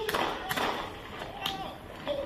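Two sharp handgun shots about a second apart, picked up by a body-worn camera's microphone.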